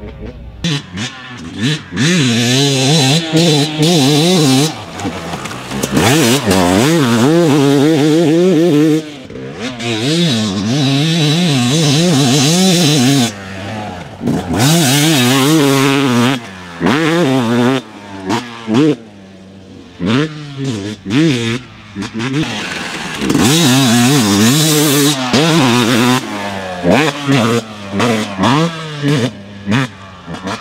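2020 Yamaha YZ250's single-cylinder two-stroke engine ridden hard off-road. It revs up and drops back again and again as the throttle is worked and gears change, in loud bursts with short lulls between them.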